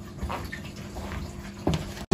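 A few soft footsteps of stiletto high heels stepping on a rug, with a faint steady hum beneath.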